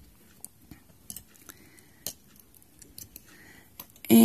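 Faint, irregular light clicks and ticks of a metal loom pick and fingers against the metal pegs of a wooden knitting loom as stitches are lifted and crossed.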